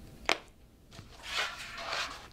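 A metal binder clip snapping onto the edge of a card pamphlet binder with one sharp click, followed by a softer knock and the rustle and slide of the binder and paper being lifted and turned over.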